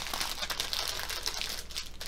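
Thin plastic crinkling and crackling as a small bag of diamond painting drills is handled and pressed flat, in an irregular run of small crackles.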